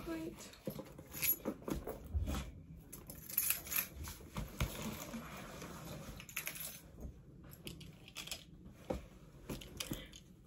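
Rustling and crinkling of a backpack, clothing and packed items being handled and stuffed into the bag, with scattered knocks and clicks.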